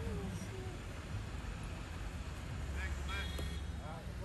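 Low, steady rumble of vehicle engines at a roadside, from idling and passing traffic including a semi truck, with faint voices over it.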